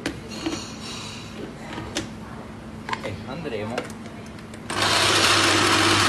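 A few knocks and clicks as a countertop blender's plastic jug is seated on its base and its lid put on. About three-quarters of the way through, the blender motor starts suddenly and runs loud and steady, blending a jug of cooked pepper mixture.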